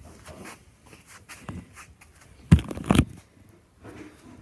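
Rustling handling noise with scattered soft taps, then two loud thumps about half a second apart past the middle.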